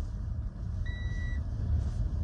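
Low, steady road and drivetrain rumble inside the cab of a Volkswagen e-Delivery electric truck as it accelerates, with no engine note. A single short electronic beep sounds about a second in.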